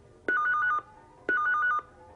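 Telephone ringing with a warbling trill that flicks rapidly between two pitches: two short rings about a second apart.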